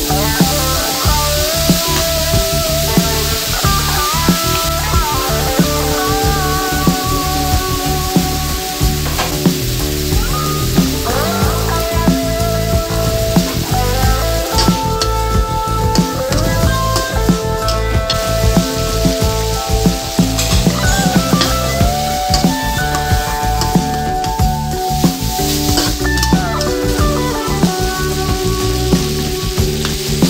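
Minced pork sizzling in a hot wok while a metal spatula scrapes and stirs against the pan in frequent clicks, over background music with a stepwise melody.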